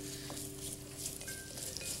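Spice paste (rempah) sizzling in hot oil in a clay pot while a spatula stirs it, with soft sustained background music notes underneath.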